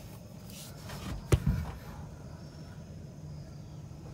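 A single sharp knock about a second in, with a little rustling around it, as things are handled under a car's dashboard, over a steady low hum.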